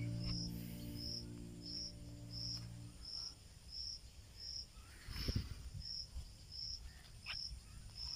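Background music fading out over the first three seconds, leaving a faint, high, even chirping of an insect, about three chirps every two seconds. A soft thump comes about five seconds in.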